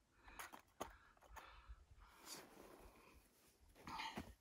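Near silence with a few faint clicks and rustles as a small canister camp stove and its pot are handled.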